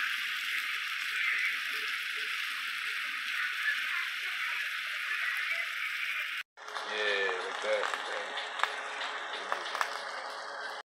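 Stuffed chicken breast sizzling in oil in a nonstick frying pan, a steady hiss. It cuts off sharply about six and a half seconds in and picks up again after a short gap.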